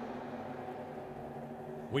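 Two Super Gas drag cars running flat out down the strip, their engines heard as a steady, even drone that holds one pitch.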